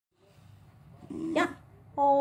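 A 19-year-old long-haired dachshund giving one short bark about a second in.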